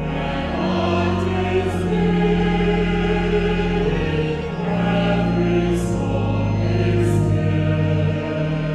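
Mixed choir singing a hymn, with steady low held notes beneath the voices.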